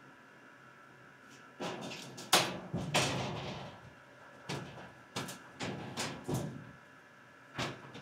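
Irregular clicks, knocks and rustles of hands working among patch cables and equipment in a metal network rack, over a faint steady whine.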